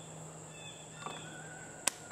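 Faint outdoor background: a steady high-pitched insect drone with a low hum beneath it, and one sharp click near the end.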